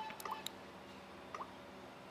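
Faint touch sounds from a Samsung Galaxy S3 as its screen is tapped: a few short clicks with brief pips, one cluster just after the start and another near the middle, over a low steady hum.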